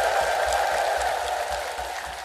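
Large crowd applauding, the sound slowly dying away toward the end.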